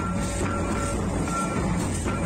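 Live Santal dance music: drums keep up a dense beat while a high held note sounds again and again in short stretches over it.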